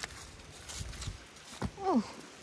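Leaves and branches rustling as apples are handled on the tree, with a few faint clicks. Near the end comes a short vocal sound that falls steeply in pitch.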